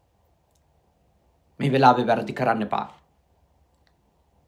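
A man speaking one short phrase in Sinhala, starting about one and a half seconds in. Dead silence either side of it.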